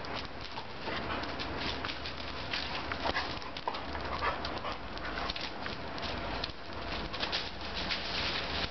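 Two German pointers play-fighting over a ball. Dog sounds over a busy run of short scuffles and knocks, with a few brief whine-like sounds in the middle.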